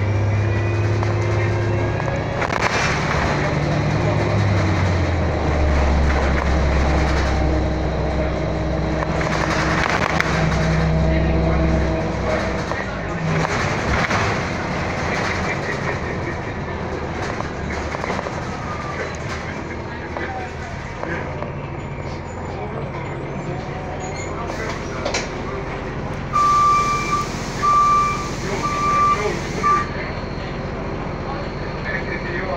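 Inside an Orion VII hybrid-electric transit bus under way: a low drivetrain hum shifts in pitch over the first dozen seconds, then settles into a steadier rumble of road noise. Near the end come about four short, evenly spaced high beeps.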